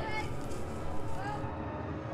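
Children's high voices calling out in short wordless cries over a low rumble. About a second and a half in, a steady, eerie music drone takes over.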